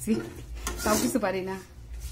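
Metal spatula scraping and clattering against a dark kadai while leaves are stirred in oil.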